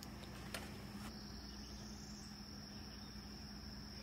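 Faint, steady high-pitched insect trill, like a cricket's, over a low steady hum, with one faint click about half a second in.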